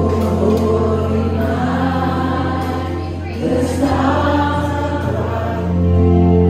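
Music with a choir singing over instrumental accompaniment, with a steady sustained bass.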